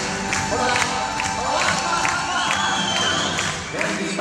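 Dance music with a steady beat accompanying a folk dance, with a crowd cheering and whooping over it.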